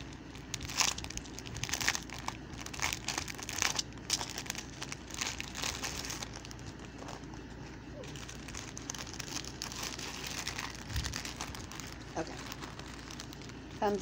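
Crinkling and rustling of a small plastic bag holding jewelry as it is handled, in irregular bursts that are busiest in the first half and sparser later.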